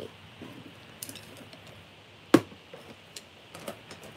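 A few light clicks and taps, with one sharp knock a little past the middle as the loudest sound, over quiet room tone.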